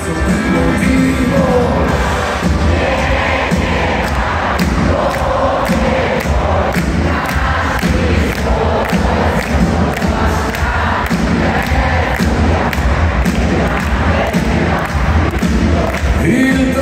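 A live rock band playing in a large arena, heard from the audience, with a steady drum beat and heavy bass. Crowd noise mixes in with the music, and the sound is boomy with the hall's echo.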